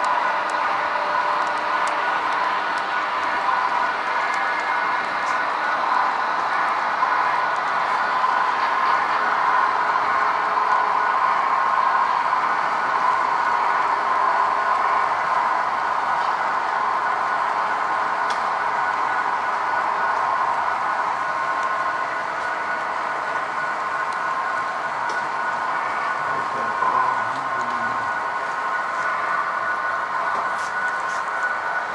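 HO-scale model passenger train rolling past, a steady even running noise of its wheels on the rails with a faint whine.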